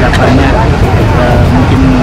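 A man's voice in short broken phrases over a loud, steady low rumble.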